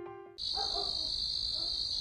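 Crickets chirping in a steady high-pitched trill as night ambience, starting abruptly about a third of a second in. Before that, a soft held music note fades out.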